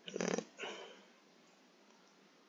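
Two short vocal sounds in quick succession within the first second, the first louder than the second.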